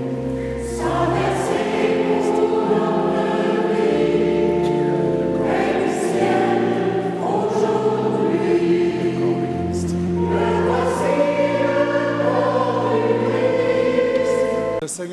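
Church choir singing a slow communion hymn in long held chords over a low bass line that changes every couple of seconds.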